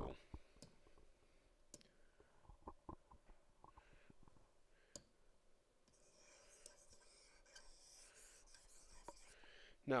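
Faint scattered clicks and taps of a stylus on a drawing tablet, with a soft scratching rub from about six seconds in as the on-screen drawing is erased.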